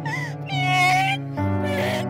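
A woman crying and wailing in distress, her voice rising and falling and then holding one long note, over sad background music with sustained low notes.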